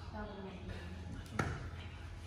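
Low, indistinct voices in a large room over a steady low hum, with a single sharp thump about one and a half seconds in.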